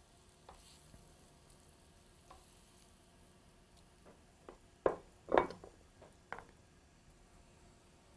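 Butter and fat sizzling faintly in a frying pan on the burner, with a few sharp clinks of metal tongs against the plate and pan, the loudest two about five seconds in.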